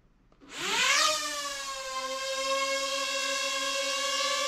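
Ryze Tello mini drone's motors and propellers spinning up about half a second in, the whine rising fast in pitch, then settling into a steady high hovering whine as it takes off and holds still in the air.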